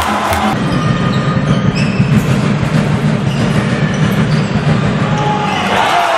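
Steady crowd noise and shouting voices echoing in an indoor sports hall as a handball goal is celebrated.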